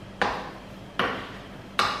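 Spoon stirring thick carrot muffin batter in a ceramic bowl, three strokes a little under a second apart, each starting sharply against the bowl and fading.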